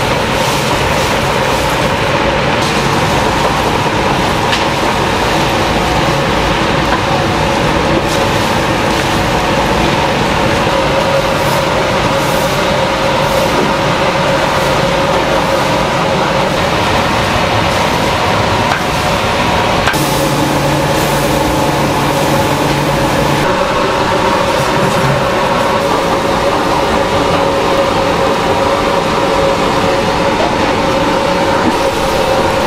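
Steady roar of commercial kitchen machinery, a gas-fired stir-fry kettle and its ventilation, with a constant mechanical hum of several steady tones while cabbage is stir-fried in the kettle. A deeper hum joins for a few seconds about two-thirds of the way through.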